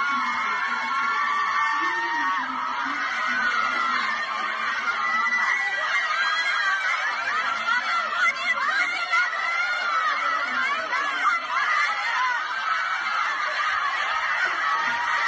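A crowd of schoolgirls shouting and laughing together, many high voices at once, as they drive an education official out of their school in protest.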